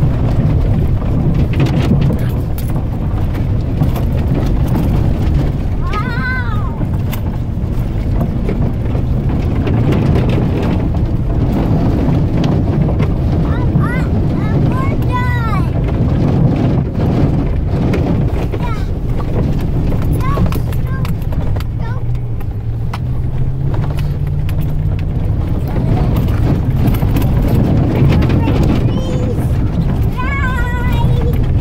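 Pickup truck engine running steadily as the truck pushes through tall weeds, heard from inside the cab, with stalks brushing and crackling against the body and windshield. The engine note rises for a few seconds about two-thirds of the way in.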